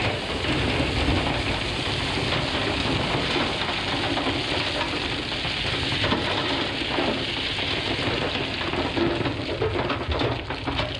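Crushed rock pouring from a wheel loader's bucket into a steel dump trailer: a continuous rush of stones landing first on the bare steel bed, then on the growing pile.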